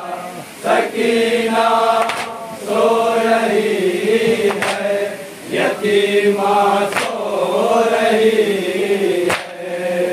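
Men's voices chanting a nauha, an Urdu Shia lament, in long drawn-out phrases, amplified through microphones. Sharp slaps land every second or two along with it, the hand-on-chest beating of matam.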